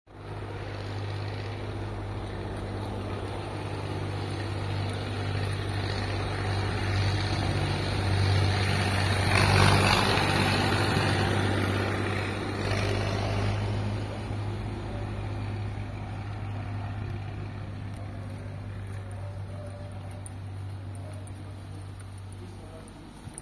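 A car engine idling steadily at an even, unchanging pitch. It swells louder about nine to ten seconds in, then fades again.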